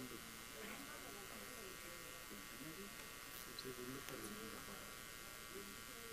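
Faint, indistinct voices in the room, off-microphone, over a steady electrical buzz and hiss.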